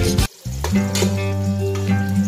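Sliced onions sizzling in hot oil in a metal pot as they are stirred, under background music. The sound cuts out briefly shortly after the start.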